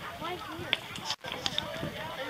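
Indistinct background voices of people talking, with a few sharp clicks. All sound drops out briefly just after a second in.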